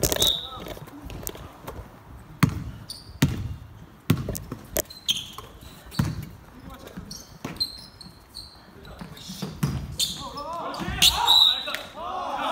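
Basketball bouncing on a wooden gym floor at irregular intervals during a game, with brief high sneaker squeaks on the court. Players' voices call out near the end.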